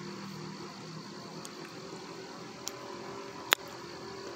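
Faint steady outdoor background with a thin, high insect drone, and one sharp click about three and a half seconds in.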